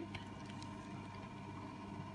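Quiet, steady background hum with faint unchanging tones and no distinct event.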